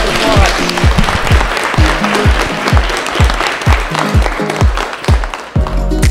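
Dinner guests applauding, over background music with a steady thudding beat. The applause dies away near the end.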